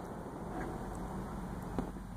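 Steady low rumble of distant road traffic in the open air, with a faint click near the end.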